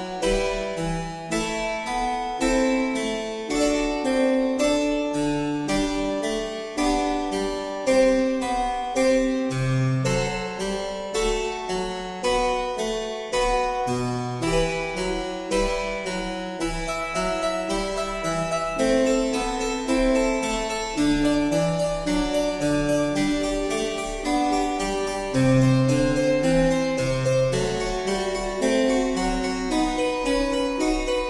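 Harpsichord playing a basso continuo accompaniment: a moving bass line under steady, evenly struck chords in a slow Baroque aria.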